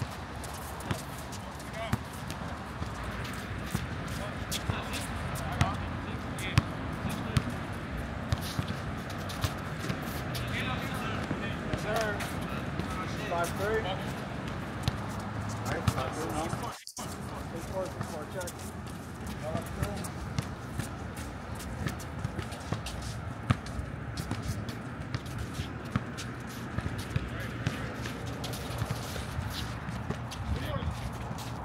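A basketball bouncing on an outdoor court during a full-court pickup game, heard as sharp thuds at irregular intervals, with players' voices and shouts in the background. The sound drops out briefly about two-thirds of the way through.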